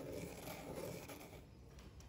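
Faint scratching of a pencil on paper as it traces around a roll of tape, growing fainter as the stroke ends.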